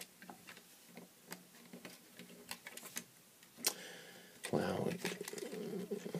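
Light plastic clicks and taps of Lego pieces being handled as a minifigure is pressed into a vehicle's cockpit, with one sharper click about halfway through. Near the end a person's low hum without words joins in.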